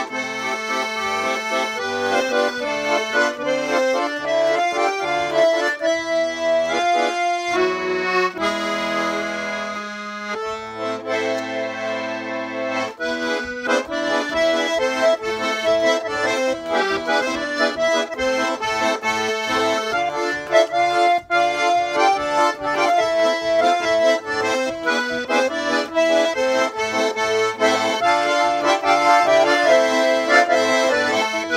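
Tula four-voice garmon in C major being played: a melody over a steadily pulsing left-hand bass-and-chord accompaniment, easing into a few held chords from about eight to thirteen seconds in before the pulse picks up again.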